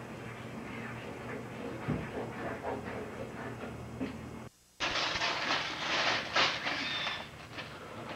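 Lower room noise with a steady low hum, then a brief dropout about halfway through. After the dropout comes louder, dense crackling and rustling of paper being handled.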